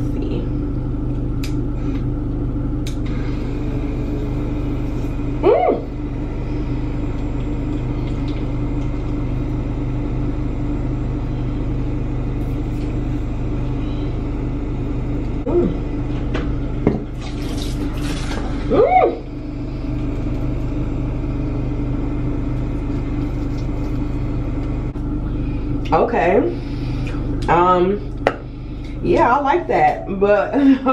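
Portable water flosser's pump running with a steady hum on its standard setting while it jets water in the mouth, with a few short vocal sounds over it.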